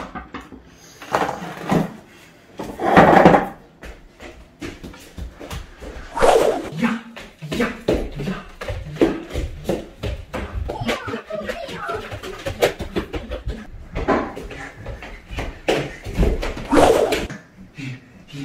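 A man's loud wordless shouts and exclamations, coming in several bursts, over many short thumps of feet as he runs and jumps about on a wooden floor.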